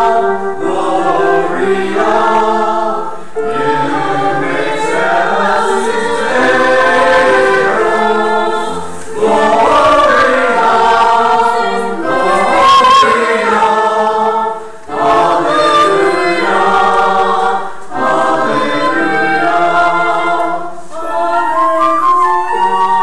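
Church choir singing in parts, in phrases broken by short breaths every few seconds.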